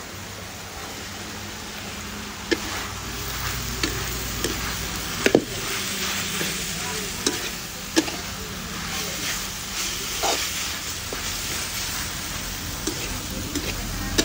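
Beef and pickled spinach sizzling in a hot steel wok, the frying growing louder a couple of seconds in as the wet greens heat, with a handful of sharp clacks of a metal spatula against the pan.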